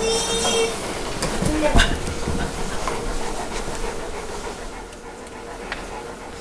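Large dog panting, with a short high squeal with overtones near the start and a brief lower squeak a little later.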